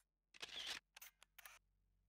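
Quiet camera-shutter sound effect: a longer swish about half a second in, then three quick clicks.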